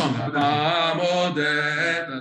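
A man singing a short chant-like melody solo, his voice holding long, slightly wavering notes.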